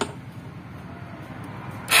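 Vespa Primavera automatic scooter engine being started: after a quiet pause it fires up suddenly near the end and keeps running.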